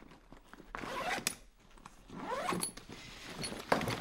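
Zipper of a soft fabric bag being pulled, in two strokes about a second apart, with a few sharp clicks near the end as the bag is handled.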